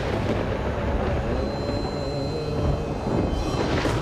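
A deep, steady thunder-like rumble from a TV drama's soundtrack, with a faint high held tone through the middle.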